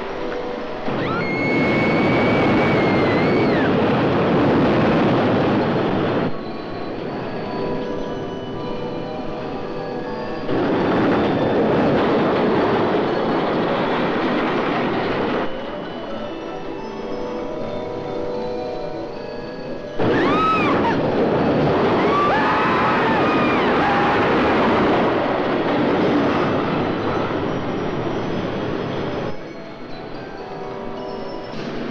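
Roller-coaster cars rumbling along a wooden track in three loud passes, about a second in, about ten seconds in and about twenty seconds in, with high gliding screams from the riders. In the quieter gaps between passes, orchestral film score with held notes carries on underneath.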